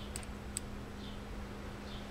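Two faint, light ticks of metal test-probe tips touching the leads of a small capacitor, over a steady low hum.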